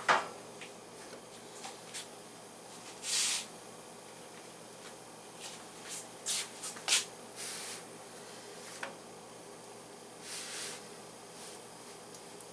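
Quiet handling sounds as rounds of raw bread dough are laid on and pressed on a flat metal griddle: a few light ticks and taps and two brief rustles, over a faint steady hiss.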